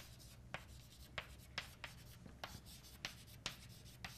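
Chalk writing on a blackboard: a faint run of short taps and scrapes as letters are drawn, about two or three strokes a second at an uneven pace.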